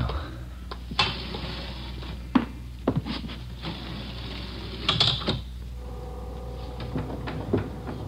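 Radio-drama sound effect of an elevator: a few clanks and knocks with a rushing, sliding noise, a louder clatter about five seconds in, then a steady hum as the car runs.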